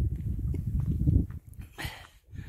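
Wind buffeting the microphone: an uneven low rumble that eases off a little past halfway, with a brief hiss near the end.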